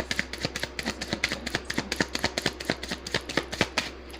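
A deck of tarot cards being shuffled by hand: a rapid, even run of card clicks that stops abruptly near the end.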